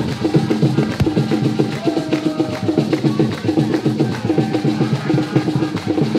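Traditional Anlo Ewe drumming: drums playing a fast, steady rhythm of repeated strokes for dancing.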